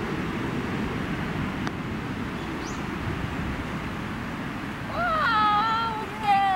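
Steady low rush of wind on the microphone, with a single light click about 1.7 seconds in as a putter strikes a golf ball. Near the end a person's drawn-out, wavering exclamation rises over it as the putt runs toward the hole.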